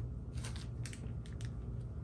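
Small clear plastic bag crinkling faintly as it is handled, a few light scattered crackles over a steady low hum.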